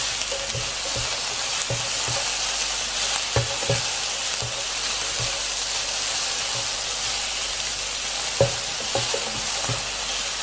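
Chopped onion and garlic sizzling in a little oil in an electric frying pan, a steady hiss, while a plastic spatula stirs them, scraping and tapping on the pan bottom every second or so; the sharpest tap comes near the end.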